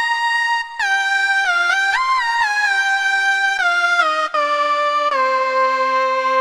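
Korg minilogue xd synthesizer playing a single-note lead melody. Each note slides into the next with portamento, through chorus and ping-pong delay, and the line works its way down to a lower held note near the end.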